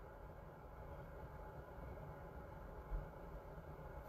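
Quiet room tone with a low steady hum, and one brief low bump a little under three seconds in.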